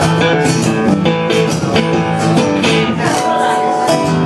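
Acoustic guitar played live, strumming chords in a steady rhythm.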